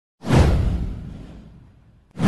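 A single intro-animation whoosh sound effect with a deep low end. It starts sharply about a quarter second in and fades away over about a second and a half.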